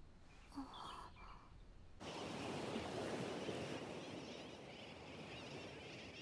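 Near quiet with one faint short sound, then about two seconds in an outdoor seaside ambience cuts in: a steady wash of surf with faint chirping over it.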